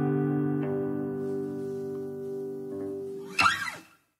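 Final chord on an acoustic guitar ringing out and slowly fading, with a faint note or two plucked over it. Near the end comes a short scrape, then the sound cuts off.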